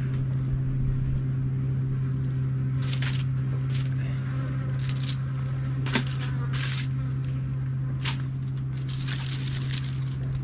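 Aluminium foil crinkling in short, scattered bursts as pieces of raw lamb are laid into a foil parcel, over a steady low hum.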